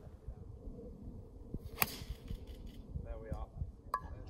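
A golf club striking a ball off the tee: one sharp crack about two seconds in, over a low rumble.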